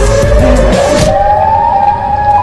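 A siren wailing with a slowly rising pitch over loud, bass-heavy music; the heavy bass drops away just under a second in.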